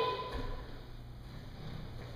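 Quiet room tone with two faint, dull low thumps, one shortly after the start and one near the end.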